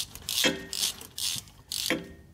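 Hand ratchet wrench clicking in about five short strokes, tightening a bolt on the governor pressure overdrive solenoid.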